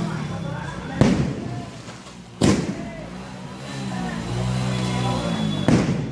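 Firecrackers going off in three sharp bangs, about a second in, around two and a half seconds, and just before the end, among spraying ground fountain fireworks. A motorcycle engine runs steadily underneath, with people's voices.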